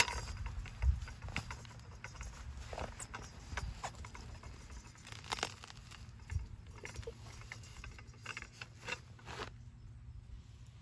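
Carbon-steel stand-up weed puller being worked into lawn soil and pulled back out with a weed. Its prongs make scattered small scrapes, crunches and clicks in the soil and grass, with a sharp click right at the start and a dull thump about a second in.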